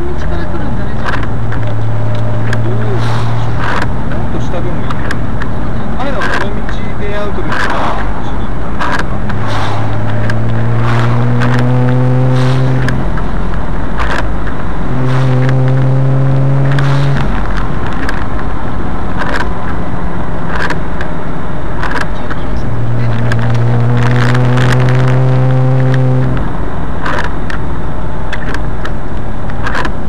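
A car engine pulling up through the revs three times, each a rising drone lasting a few seconds, with a lower steady engine note between. Under it runs a constant loud road and wind rush, broken by many short knocks and rattles.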